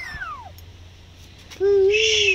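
Young kitten mewing: a high mew falling in pitch at the start, then a louder, longer cry near the end.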